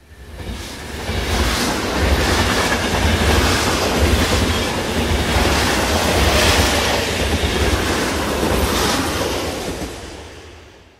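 Train rolling along rails: a low rumble with wheel clatter that swells up over the first couple of seconds and fades away near the end.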